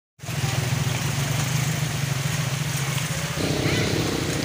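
Motorcycle engine running steadily, the sound getting fuller in the last half second or so as a motorcycle with a side cart comes closer.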